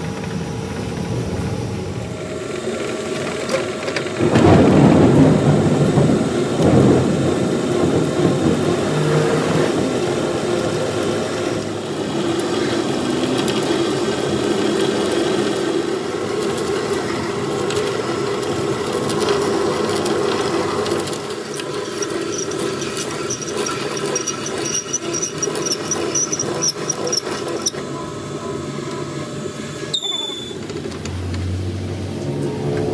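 Metal lathe turning a steel truck axle flange while a large twist drill in the tailstock bores out its centre, the drill cutting with a continuous grating noise and steady machine tones. The cut is loudest and roughest about four to seven seconds in.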